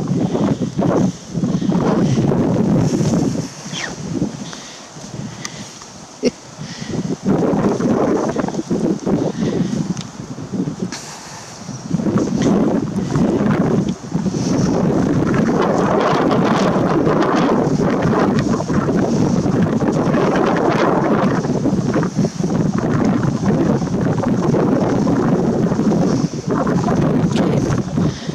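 Wind buffeting the microphone, loud and gusty, easing off twice in the first twelve seconds and then holding steady.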